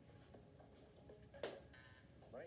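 Near silence with faint game-show audio from a phone's small speaker, broken by one sharp knock about one and a half seconds in.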